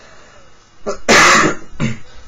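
A person coughing: one loud, short cough about a second in, with a smaller throat sound just before it and another just after.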